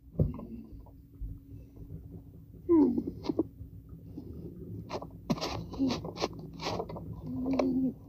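A child's wordless play noises: a short squeak falling in pitch about three seconds in, then a run of short breathy hisses and puffs, over rustling handling noise.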